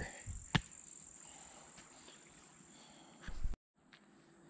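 Steady, high-pitched buzzing of insects such as crickets, with a single sharp knock about half a second in. The sound drops out briefly near the end.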